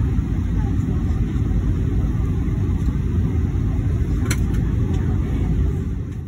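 Steady low rumble of airliner cabin noise, heard from inside the cabin, with a single sharp click about four seconds in.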